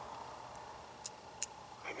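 Quiet pause with faint background hiss and two short, soft clicks, about a second and a second and a half in. A whispered voice starts right at the end.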